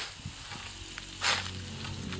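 Long-handled hoe cutting and scraping through dense green plants, two short swishes just over a second apart.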